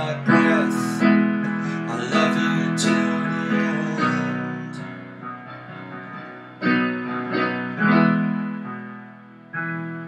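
Solo digital piano playing chords that are struck and left to ring and fade. They come about once a second at first, then one chord dies away slowly near the middle before fresh chords come in over the last few seconds.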